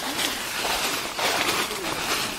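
Footsteps crunching through dry leaf litter and brushing past undergrowth, coming every half second or so, with low voices in the background.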